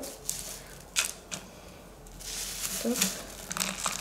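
Coarse orchid potting mix of bark chips and moss being scooped by hand and filled into a small plastic pot: dry rustling and crackling, with a couple of sharp clicks about a second in and a denser rustle in the second half.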